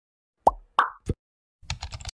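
Intro-animation sound effects: three quick popping blips, the first dropping in pitch, followed near the end by a short rattle of clicks like keys typed as the name fills a search bar.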